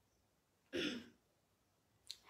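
A woman clears her throat once, a short rough burst about three-quarters of a second in.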